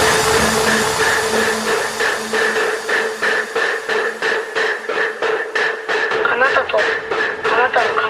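Electronic industrial/EBM track: sharp metallic percussion hits several times a second over steady held synth tones, with a processed voice gliding in pitch near the end.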